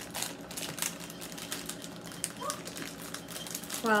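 A cardboard Peeps box and its clear plastic tray being opened by hand, crinkling with a quick, irregular run of small clicks and crackles.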